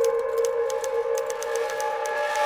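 Manual typewriter keys clacking in quick, uneven strokes, about five a second, over a sustained eerie music drone.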